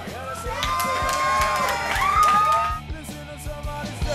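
Live rock band on stage: electric guitar and voice in pitch-bending, gliding notes over a few drum hits, with whoops and shouts from the crowd. The full band with drums kicks in right at the end.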